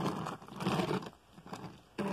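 Rustling and scraping noises from a die-cast toy car being handled and set down close to the microphone, loudest in the first second and then fading to faint scuffs.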